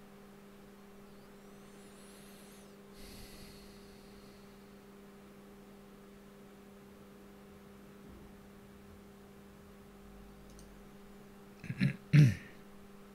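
Steady low electrical hum with a fainter higher tone above it. A brief soft noise comes about three seconds in, and a short, much louder double sound comes just before the end.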